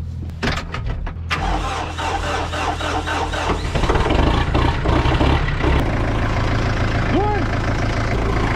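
Farm tractor engine starting about a second and a half in, then running and working louder from about four seconds.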